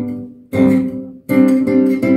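Nylon-string classical guitar played fingerstyle, chord after chord: a ringing chord fades, then a new chord is plucked about half a second in and another just after a second, each ringing out briefly before the next.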